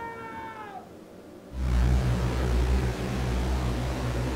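A cat's drawn-out, wavering yowl that dies away about a second in. About a second and a half in, a loud low steady rumble with a hum starts suddenly and carries on.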